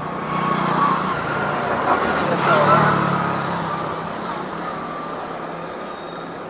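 A motor vehicle's engine running past on the street, swelling to its loudest about two and a half seconds in and then slowly fading.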